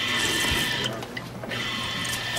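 Drinking fountain running, its stream splashing into the steel basin, with a steady high whine that drops out for about half a second near the middle.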